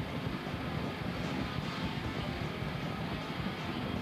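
A loud, continuous roaring rumble with crackle as stage smoke jets and pyrotechnics go off.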